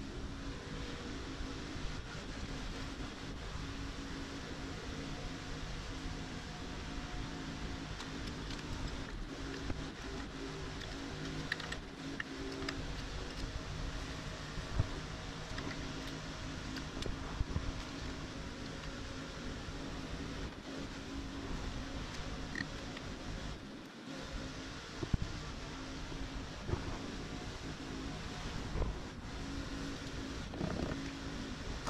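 A steady mechanical hum with a few held low tones, broken by brief dropouts and a few light clicks.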